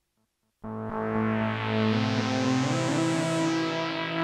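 Stylophone Gen X-1 analogue synthesizer playing a held pad-like tone, starting about half a second in. The stylus moves across the keys so the pitch steps to new notes a few times. The built-in delay, set with high feedback, keeps the earlier notes ringing under the new ones, building a chord-like wash from the monophonic synth.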